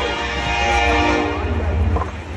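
A long, steady horn blast that fades out near the end, over a low rumble.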